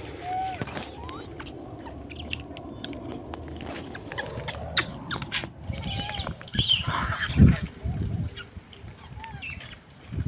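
Short, pitch-bending animal calls and chirps, with scattered sharp clicks and knocks, over steady outdoor background noise; a louder low burst of noise comes about seven and a half seconds in.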